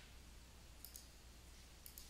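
Faint computer mouse clicks: a quick double click about a second in and a single click near the end, over near-silent room tone.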